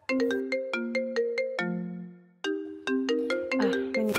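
Mobile phone ringing with a melodic ringtone: a tune of short, bright notes. Around the middle there is a held note and a brief pause, then the tune starts again.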